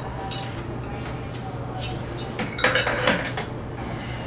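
Light metallic clinks and taps from steel frame-jig parts being handled and adjusted: a few scattered single clicks, then a quick cluster of knocks over about the last second and a half, the loudest of them.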